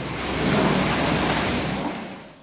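Steady rushing noise from an excavator demolishing a building, swelling about half a second in and dying away at the end.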